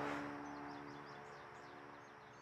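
Faint birds chirping, with a steady low drone underneath. Both fade out together over the two seconds.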